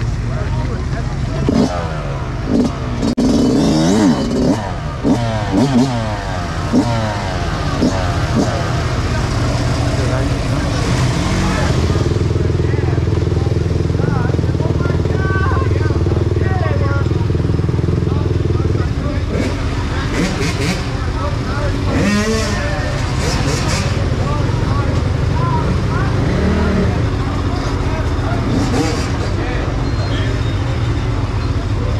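Dirt bike engines running among a group of bikes: several revs rising and falling over the first ten seconds or so, then an engine holding a steady idle for several seconds, with people's voices mixed in.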